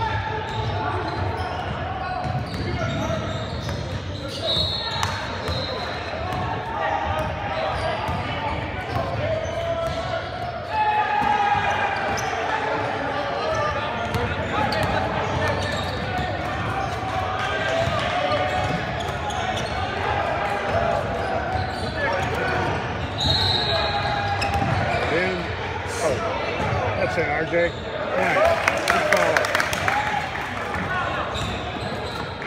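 A basketball bouncing on an indoor court during a game, with steady crowd chatter echoing in a large gymnasium.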